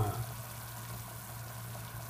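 Chicken simmering in broth in a stainless steel pot: a faint, steady bubbling over a low hum.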